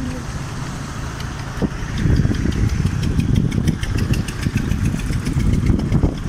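Street traffic: a motor vehicle's engine running close by, louder from about two seconds in, with a fast regular ticking over the rumble.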